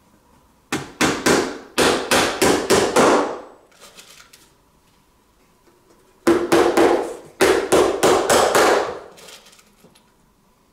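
Claw hammer nailing a small wooden box together: two runs of quick, sharp blows, about three or four a second, the second run starting about six seconds in.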